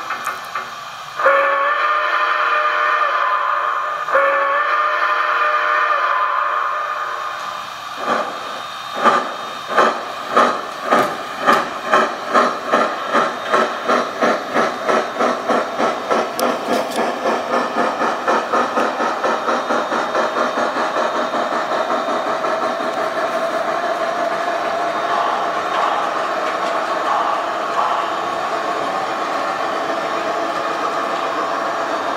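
Sound decoder (QSI Magnum) in an O-scale Santa Fe 2-10-4 steam locomotive model playing a Santa Fe steam whistle: two long blasts. Then steam exhaust chuffs start about one a second and quicken steadily until they run together as the locomotive pulls away.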